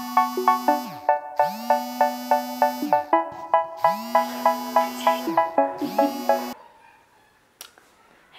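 Mobile phone ringtone: a bright repeating melody of quick notes, about four a second, over a low tone that swoops up and holds. It cuts off suddenly about six and a half seconds in, when the call is answered.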